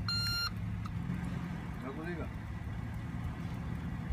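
Toyota Land Cruiser SUV engine idling steadily, with an electronic reversing beep that stops about half a second in.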